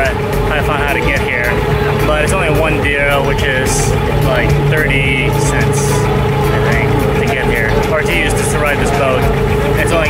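A Dubai Creek abra's engine running steadily, with people talking over it.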